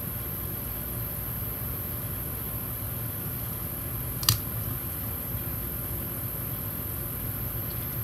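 Steady low room hum with hands working a sticker onto a paper planner page; one short sharp click a little past the middle.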